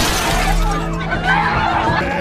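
Glass panel of a train carriage door shattering at the start, with debris still falling, over film score music and shouting voices.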